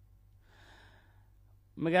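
A faint breath drawn in over a low hum, then a voice starts speaking near the end.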